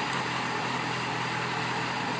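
2005 Yamaha FZ6's 600cc fuel-injected inline-four engine idling steadily.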